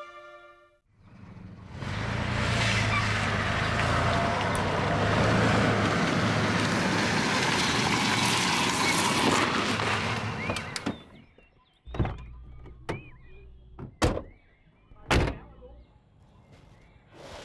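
A Chevrolet pickup truck drives up and stops, its engine and tyres making a steady rumbling noise for about nine seconds before it fades out. Then come several sharp car-door thunks a second or so apart.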